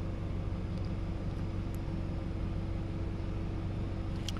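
Steady low mechanical hum with a faint hiss, heard inside a car's cabin.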